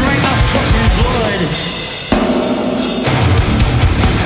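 Metalcore band playing live at full volume: distorted electric guitars, bass and drums. In the first half there are notes that slide in pitch, then about two seconds in the band drops abruptly into a heavier, lower riff.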